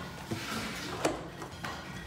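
Plastic footrest of a high chair being pressed down onto the seat back so its hooks snap into their slots, with a sharp plastic click about a second in.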